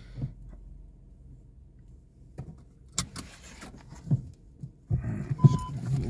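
A few clicks and knocks inside a parked car's cabin, as if something is being handled, followed by a short single-pitched electronic beep near the end.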